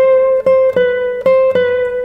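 A 1997 Alfredo Velazquez classical guitar playing a single-note melody, plucked notes coming about every third of a second and each left to ring, moving between neighbouring pitches.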